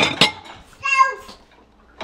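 Dishes clinking twice as they are lifted out of the dishwasher rack, then a short high-pitched call about a second in that drops in pitch at its end.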